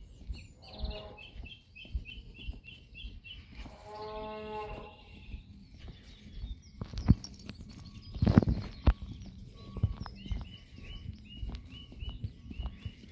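A sheep bleating twice, each bleat about a second long, while a small bird repeats a quick high chirp several times at the start and again near the end. A couple of louder thumps come about seven and eight seconds in.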